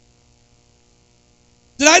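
Faint, steady electrical mains hum from the sound system during a pause. A man's voice starts abruptly near the end.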